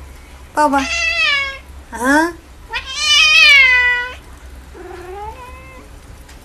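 Cat meowing loudly three times: a meow, a short rising one, then a long drawn-out yowl, the loudest of the three. A fainter, lower voice follows near the end.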